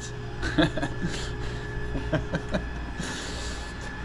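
A person chuckling softly, with a few short breathy vocal sounds, over a steady low hum.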